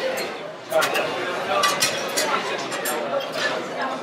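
Several sharp clinks of glass and metal as bar tools and bottles are handled: a steel jigger tipped into a mixing glass, and bottles set down and picked up. Under them runs the background chatter of a busy bar.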